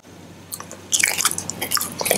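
Close-miked biting and chewing of a stick of Lotte Blueberry chewing gum. A first crisp bite comes about half a second in, then a dense run of small crackling clicks as the stick is drawn into the mouth.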